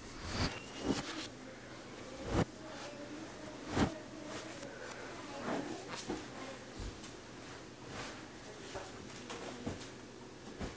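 Pillows and cushions being tossed and patted into place on a bed: a string of soft, irregular thumps and short rustles of fabric.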